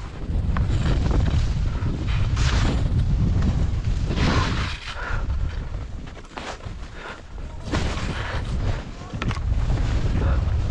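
Wind buffeting the camera's microphone: a heavy low rumble that swells and eases, with a few brief hissing surges.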